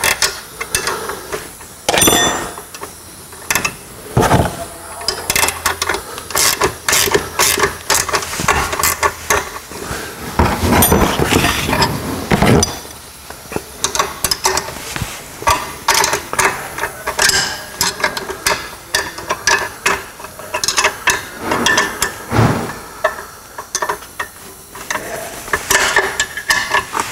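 Two open-end wrenches clinking and scraping against a steel nut and bracket as the pivot bolt on a Camso UTV 4S1 front track's angle-of-attack adjuster is tightened, in a run of irregular metallic clicks.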